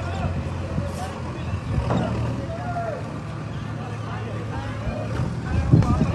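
People talking in the background over a steady low engine drone, with a louder bump near the end.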